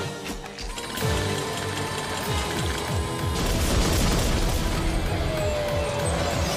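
Battle music from an animated sword fight, mixed with metallic weapon clashes and booming impacts. The mix grows denser and noisier about halfway through.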